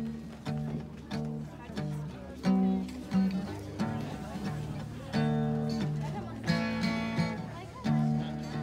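A man singing to his own strummed acoustic guitar, played live.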